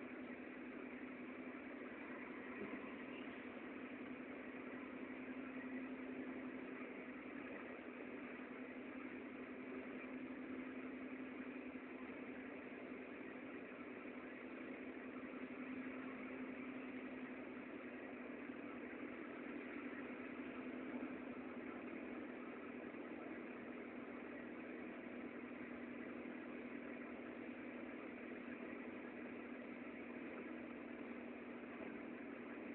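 Suzuki Alto's engine and road noise heard from inside the cabin while driving: a steady hum with a constant low drone.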